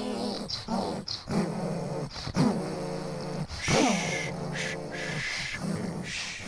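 A voice making low monster growls and groans, with several drawn-out cries that fall in pitch and a breathy hiss a little past the middle.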